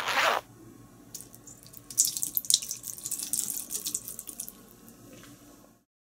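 Water splashing into a sink basin around the drain: a loud splash at the start, a quieter trickle, then a few seconds of irregular spattering and dripping that stops just before the end.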